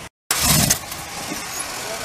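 The 440 V8 of a 1970 Chrysler 300 catching and starting with a loud burst right after a brief break in the audio, then running steadily.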